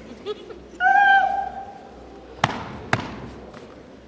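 A long, held shouted call, then two sharp stomps about half a second apart, echoing in a gymnasium: the opening of a masked step team's chant and step routine.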